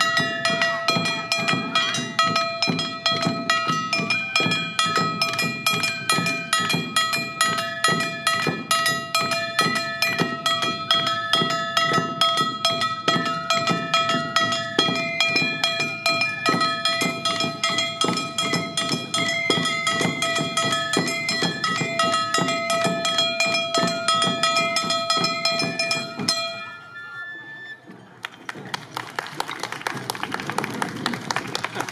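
Awa odori festival band: bamboo shinobue flutes playing the melody over a steady beat of barrel drums and a clanging hand gong (kane). About 26 seconds in the music stops, and clapping and voices follow.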